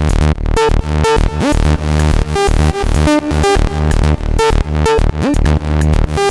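Eurorack modular synth patch playing electronic music: a sequenced saw-wave bass line with sub and noise through a Dwyfor Tech Pas-Isel low-pass filter, its cutoff moved by an envelope, stepped random and an audio-rate oscillator for a crunchy robotic overtone. Drums and reverb sit under it, and side-chain makes the filter output pump in a steady beat.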